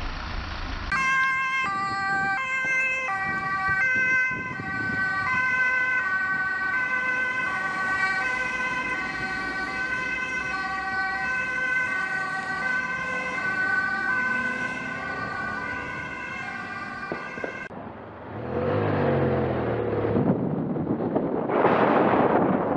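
Ambulance two-tone siren, switching back and forth between a high and a low note, cutting off suddenly near the end. It is followed by engine and road noise from a moving vehicle that grows louder.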